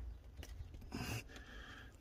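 Faint, soft rustles of fingers pressing a begonia tuber into loose potting compost in a plastic pot, about half a second and a second in.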